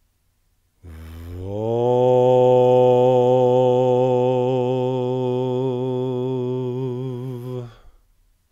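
A man's low voice intoning one long, steady chanted note for about seven seconds. The vowel opens out as the note begins, and the pitch wavers slightly as it is held.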